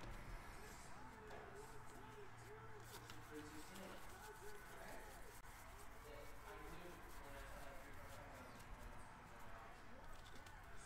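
Near silence: a quiet room with faint, indistinct voices in the background.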